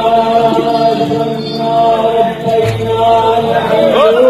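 Several voices singing a held, chant-like note together, the pitch barely moving.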